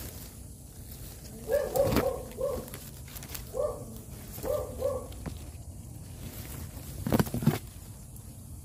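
An animal calling in three short runs of quick, evenly pitched notes, about a second and a half in, then around three and a half and four and a half seconds. Crackling and rustling of dry undergrowth, loudest near the end.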